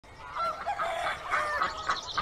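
Chickens clucking and calling: a run of short calls, one after another.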